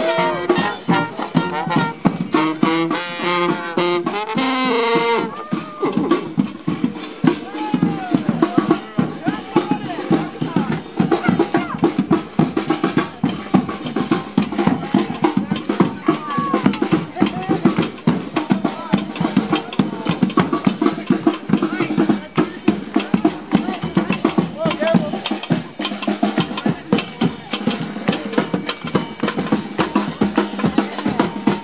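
Marching brass band playing in the street: horns (trumpets, sousaphone) sound a phrase in the first few seconds, then a steady drum beat carries on with voices of the marching crowd talking and calling over it.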